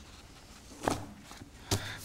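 Two short knocks, a little under a second apart, against quiet room tone.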